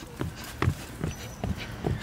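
A toddler's feet thumping on a rubber-matted playground platform as she jumps: about six short, irregular thuds.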